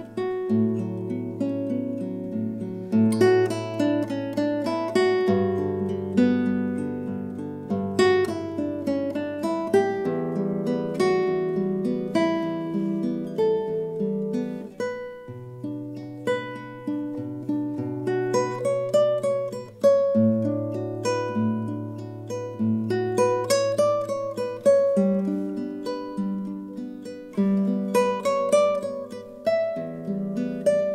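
Nylon-string classical guitar played fingerstyle: arpeggiated chords over low bass notes, with a melody picked out on top, each note ringing and fading.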